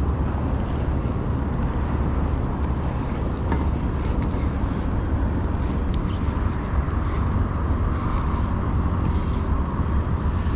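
Steady low rumble of wind buffeting an open-air camera microphone, with faint light ticks from a spinning reel being cranked to retrieve a jig.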